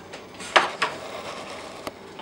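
Steel spring belt tensioner being handled and hooked onto a 3D printer's rubber toothed belt: small metallic clicks and fiddling noises, two sharper clicks about half a second and just under a second in, and a light tick near the end.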